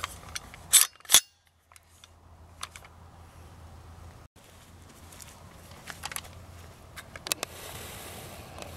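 Sharp metallic clacks of an AR-57 rifle being handled: two loud clacks about a second in, a third of a second apart, then a few fainter clicks later.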